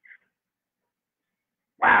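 Near silence, then near the end a man's loud, drawn-out exclamation of "Wow".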